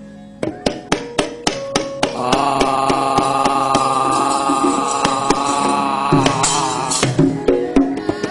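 Javanese gamelan music for a wayang kulit show. It opens with a run of sharp knocks, the dalang's cempala and keprak, coming faster over the first two seconds. Then a long, wavering held melodic line runs over drum and further knocks, and the fuller ensemble comes back in near the end.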